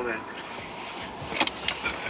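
Quiet car cabin with a faint low rumble, then a quick cluster of sharp clicks and taps about a second and a half in.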